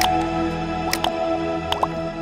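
Short outro music of held tones, with sharp click and pop sound effects near the start, about a second in, and twice near the end, as an animated subscribe button is clicked.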